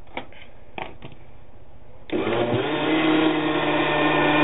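After a few light clicks, an electric blender starts about two seconds in, spins up within half a second and runs steadily, mixing flour and water into a glue paste.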